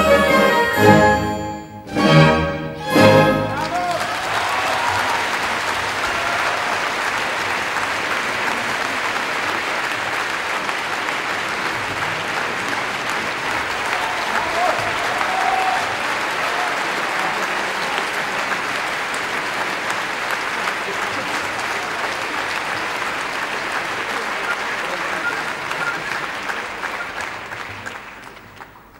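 A live orchestra plays its last few loud chords. About three and a half seconds in, a large audience breaks into long, steady applause, which fades away near the end.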